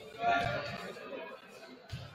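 Voices calling out in a large echoing gymnasium, loudest about a quarter of a second in, with a single sharp thud near the end.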